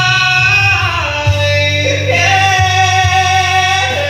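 A man singing karaoke into a microphone with long held notes, dropping in pitch about a second in and rising again about two seconds in, over a backing track with a steady bass.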